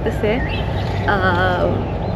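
Soft, brief speech-like voice sounds over a steady low outdoor rumble.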